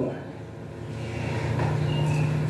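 A steady low hum that grows louder through the second half.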